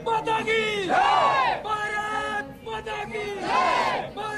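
A group of soldiers' voices singing a patriotic song together in unison, with loud rising-and-falling swells about a second in and near the end.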